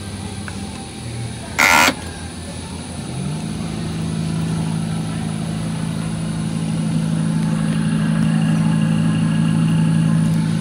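Spin-art machine's turntable motor spinning up about three seconds in, a brief rise in pitch, then a steady low hum that grows slightly louder. Before it starts, a short loud burst of noise.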